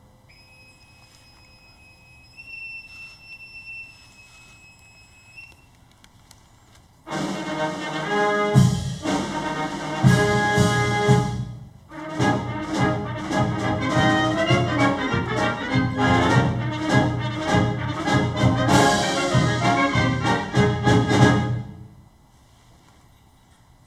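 A boatswain's pipe sounding one long shrill held note that steps up slightly partway through, piping an arriving flag officer over the side. About seven seconds in, a military brass band starts playing honors music, breaks off briefly and carries on loudly.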